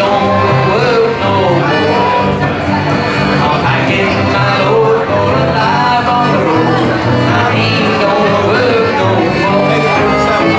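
Live acoustic string band playing an upbeat hoedown-style number: a fiddle carries the melody over upright bass and strummed acoustic guitar.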